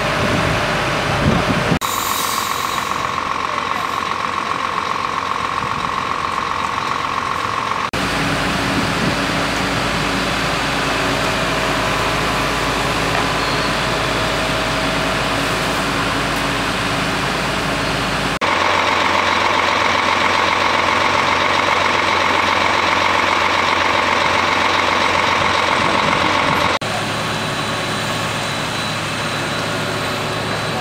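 An engine running steadily at a fire scene, a continuous mechanical drone whose character changes abruptly at several edit cuts.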